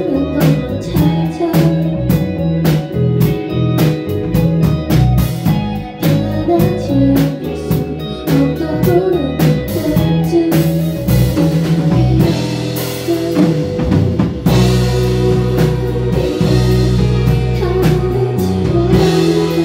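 A live band playing rock-leaning indie music on electric guitar, drum kit and female vocals. Regular drum strikes drive the first half; from about ten seconds in the sound grows denser and steadier, with a fuller low end.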